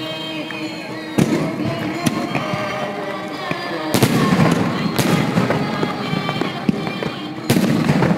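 Aerial fireworks going off: a string of sharp bangs, the biggest in the second half, over continuous music with singing.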